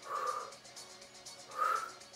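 A woman exercising breathes out hard twice, about a second and a half apart, over quiet background music.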